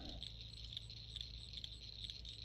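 Faint background noise with no distinct event: a low rumble under a steady high-pitched hiss.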